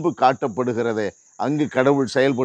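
A man preaching in Tamil, pausing briefly about a second in, over a steady high-pitched chirring of crickets.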